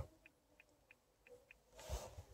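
Near silence in a car cabin, with five faint, short ticks spread over the first second and a half and a soft handling bump near the end.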